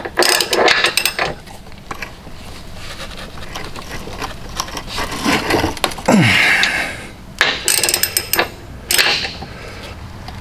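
Hand ratchet wrench tightening the bolts of a tie-down bracket under a car, its pawl clicking rapidly in three spells as the handle is swung back between turns.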